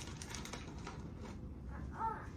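Light crinkling of a plastic bag and small clicks of a measuring spoon as baking soda is scooped out: a scatter of short, quiet ticks and rustles.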